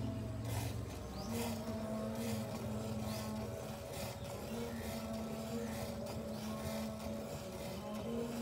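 Water buffalo being hand-milked into a steel bucket: squirts of milk hiss into the froth about once a second, over steady held tones of background music.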